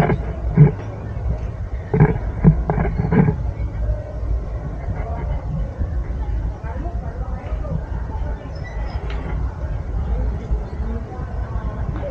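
Busy city street ambience: a steady low rumble of traffic, with a few short bursts of nearby voices in the first three seconds.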